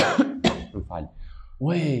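A man's theatrical huffing and groaning: a sudden forceful exhale, then a few short cough-like puffs of breath, then a drawn-out voiced moan near the end. It mimics someone overcome by oppressive heat.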